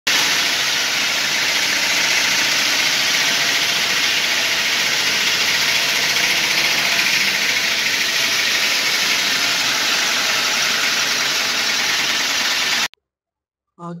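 Belt-driven atta chakki (stone flour mill) running with a loud, steady noise that cuts off abruptly about a second before the end. The owner finds the noise comes from a bent fan and a broken nut catching against the machine's body.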